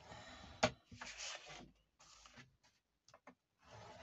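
A scoring tool scraping along a groove of a Scor-Pal scoring board through kraft card, scoring fold lines: about three short dry rubbing strokes with a few light clicks between them.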